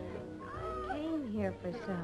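Several people meowing like cats over background music, their calls sliding up and down in pitch.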